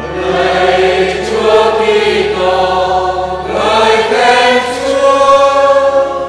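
Church choir and congregation singing the sung response that follows the chanted end of the Gospel reading at Mass, several voices together.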